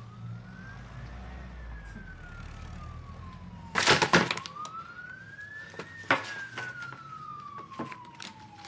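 An emergency-vehicle siren wailing in the background, its pitch slowly rising and falling about every five seconds. About four seconds in, a short burst of clattering clicks as a bag is opened on a desk, with a few lighter clicks after.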